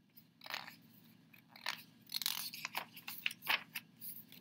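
Paper pages of a picture book being handled and turned: a series of short rustles and crinkles, the loudest cluster near the end.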